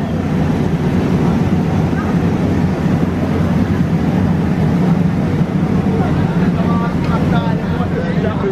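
Loud, steady busy-street ambience: low traffic rumble mixed with the chatter of a crowd on foot, with a few nearby voices near the end.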